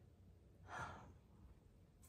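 Near silence with a single soft breath out, a woman's sigh, lasting about half a second near the middle.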